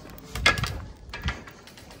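Glass door with a metal push bar being pushed open, giving a loud clunk about half a second in, then a second, softer knock just over a second in.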